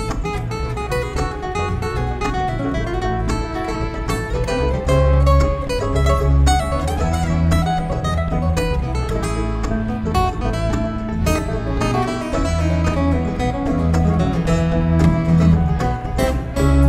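Live bluegrass string band playing an instrumental break with no singing, an acoustic guitar taking a fast picked lead over a steady bass line and string-band backing.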